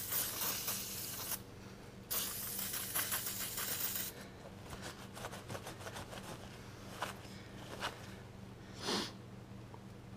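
Aerosol spray can hissing in two bursts, the first about a second and a half long and the second about two seconds, as it sprays a drilled steel plate. After that comes softer rubbing and a few scuffs as a rag wipes the plate clean.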